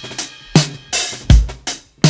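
Drum kit beat of a hip hop track: kick drum and snare hits, with no vocals over them.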